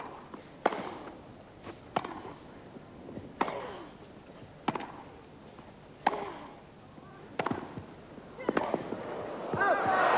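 Tennis rally on a grass court: a regular series of sharp racket-on-ball strikes, a little more than a second apart, starting with the serve. Crowd applause starts to rise near the end as the point finishes.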